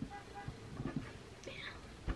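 Faint whispering, with soft bumps and rustles as a cardboard box is handled.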